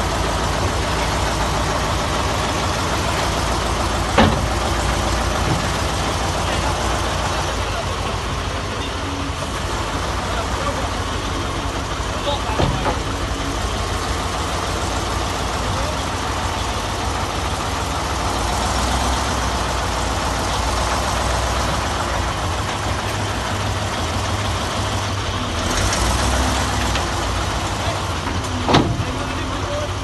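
Heavy truck engine running steadily at idle, with three sharp knocks, about 4, 12 and 29 seconds in.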